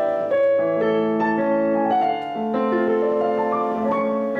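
Yamaha DGP-1 GranTouch digital piano being played by hand: notes struck about twice a second over held, ringing chords, in a sound sampled from a Yamaha full concert grand.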